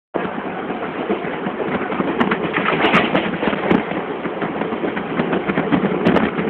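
EMU suburban local train running at speed over a creek bridge, heard from inside the coach: a steady rumble of wheels on rails with a dense, irregular clatter of clicks and knocks.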